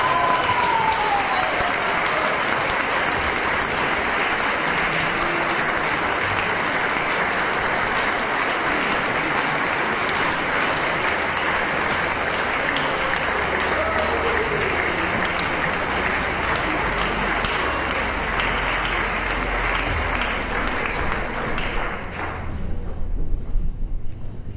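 Audience applauding steadily, with a few voices calling out over it; the applause stops about 22 seconds in.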